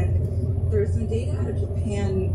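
A voice talking, most likely from the car radio, over the steady low drone of a car's road and engine noise inside the cabin at motorway speed.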